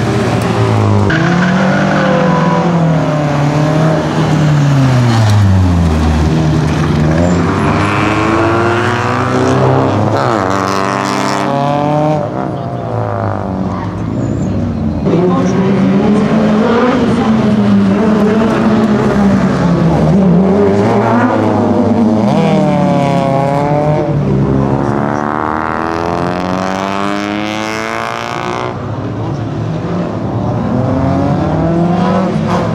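Renault 5 rally car's engine revving hard through the gears, its pitch climbing and dropping again and again as it accelerates and lifts off.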